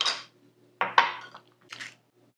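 Metal measuring spoons clinking and scraping against ingredient containers: three short clatters about a second apart, the middle one with a brief ring.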